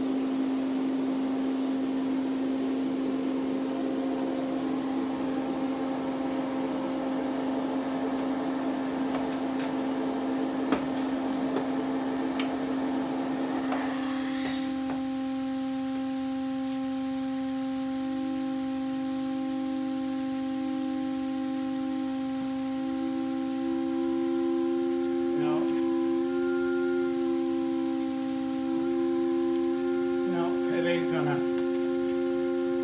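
Pipe organ pipes sounding sustained notes: one low note held steady throughout, with a breathy hiss over the first half that stops about 14 seconds in, and a second, higher note entering about 18 seconds in that wavers slightly in pitch while the pipe is handled, with a few light clicks. The pipe being worked on will not hold its tuning because the leather seal around its tuning plate has dried up and crumbled.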